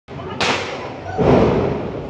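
Diwali firecrackers going off: a sharp bang about half a second in, then a louder, duller thud just over a second in, over background voices.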